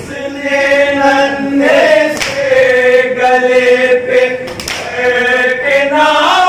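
A group of men's voices chanting an Urdu noha, a Shia lament, in unison and holding long drawn-out notes. A sharp beat lands about every two and a half seconds, keeping time.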